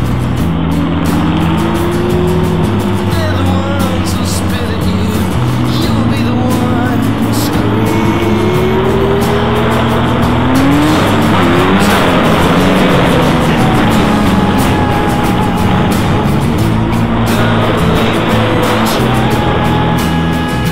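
Motorcycle engines on a group ride at street speed, their revs rising and falling several times as the bikes accelerate and ease off, over steady rushing noise from riding.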